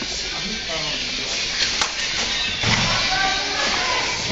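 Indistinct voices calling out over a steady background din, with a sharp click about two seconds in.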